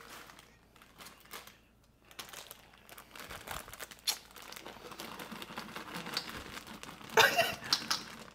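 A plastic snack bag of milk chocolate chips crinkling as it is handled and tipped over a bowl. The crackly rustling starts about two seconds in and goes on irregularly, with a louder burst near the end.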